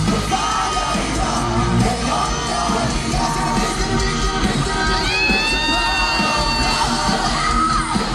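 Rock band playing live: electric guitars and drums with sung vocals. About five seconds in, a long high note slides up and holds for around two seconds over the band.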